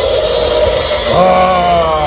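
Electronic roar from a toy Tyrannosaurus rex's built-in speaker, set off by pressing its back: a rough, gritty growl lasting about a second, followed by a person's "oh".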